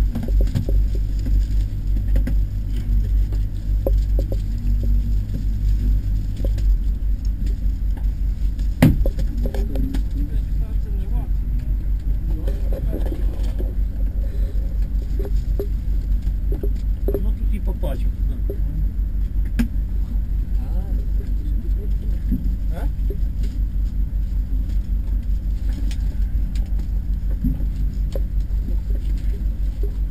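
Plastic-wrapped blocks of cigarette packs being handled and pulled out of a hidden floor cavity in a car, with scattered rustles, clicks and knocks, one sharper knock about nine seconds in. Under it runs a steady low rumble with a regular pulse.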